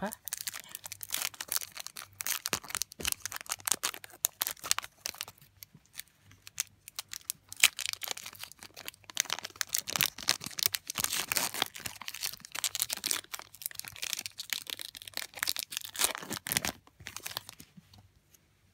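Pokémon trading-card booster pack's foil wrapper being handled and torn open by hand, with a dense, irregular crinkling and crackling that goes on almost without a break.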